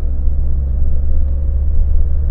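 Steady low rumble of a car being driven along the road, heard from inside its cabin.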